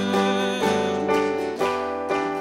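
Music: a song's keyboard accompaniment, sustained piano-like chords with a new one struck about twice a second, between sung lines.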